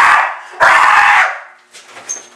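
Dog barking loudly twice, the second bark longer and ending about a second and a half in.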